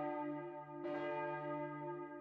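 A bell tolling, struck about every second and a half, each stroke ringing on steadily until the next.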